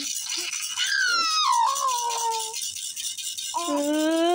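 Baby rattle shaken continuously, a fast dry shaking. A high voice slides down in pitch in the middle, and another voice starts near the end.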